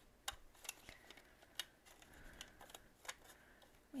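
Faint, irregular light taps and rustles of paper banknotes being handled and pushed together on a table.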